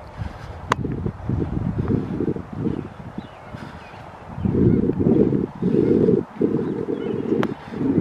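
Wind buffeting the handheld camera's microphone in uneven gusts, a low rumble that comes and goes, heaviest in the second half, with a couple of sharp clicks.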